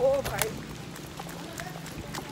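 A man's voice briefly at the start, then faint hurried footsteps over a low outdoor background.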